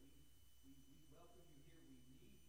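Near silence: a faint, murmured voice of someone praying quietly, over a steady low electrical hum.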